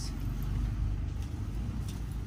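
A steady low background rumble, with a few faint rustles as cotton T-shirts are handled and lifted.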